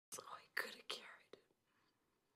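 Whispered speech: a short phrase of three or four breathy syllables, ending about one and a half seconds in.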